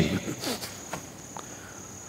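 A pause in a man's talk, with a faint, steady, high-pitched tone running under the quiet room sound; his last word trails off at the start, and there is a small click about one and a half seconds in.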